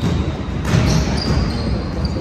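Basketball being dribbled on a wooden gym court during play, with short high squeaks from sneakers. The sound rings in a large hall, and it gets louder briefly a little under a second in.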